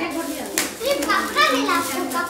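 Children's high-pitched voices chattering excitedly, with a brief crackle of foil gift wrap about half a second in.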